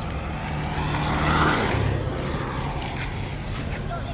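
A motor vehicle passing close by on the street, its engine and tyre noise swelling to a peak about a second and a half in and then fading away.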